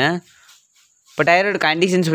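A man speaking, with a pause of about a second in the middle, over a thin, steady high-pitched whine.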